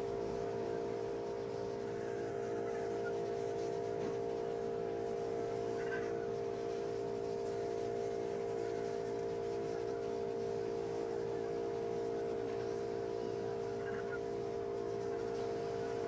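A steady drone of a few held tones sounding together, unchanging in pitch and loudness.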